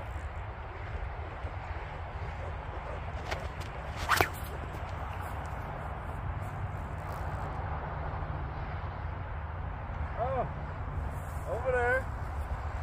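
Low steady outdoor rumble, with one sharp knock about four seconds in.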